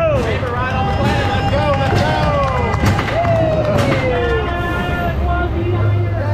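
Several roller coaster riders whooping and shouting, with long falling "woo" calls, over a low steady rumble from the coaster train as it starts rolling out of the station.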